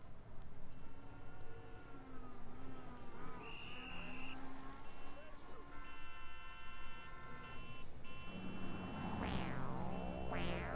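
Recorded city street ambience as a rock track's intro: traffic and indistinct voices with a few held and wavering tones. About eight seconds in, a synthesizer swells in with sweeping rising and falling tones.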